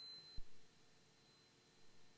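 Near silence on the cockpit radio audio, with a single faint click about half a second in and a faint thin high tone dying away just after a radio transmission ends.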